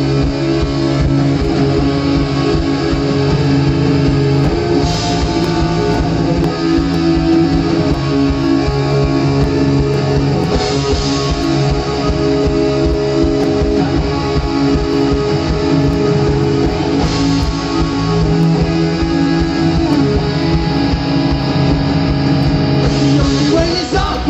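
Rock band playing live through a festival PA: strummed electric guitar with keyboard and drums keeping a steady beat, an instrumental passage with no vocals yet.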